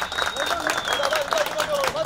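Spectators clapping and shouting in celebration, with a long high whistle-like tone that stops about a second in.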